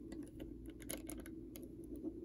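LEGO bricks being handled and pressed onto a plate: a faint, quick, irregular run of light plastic clicks.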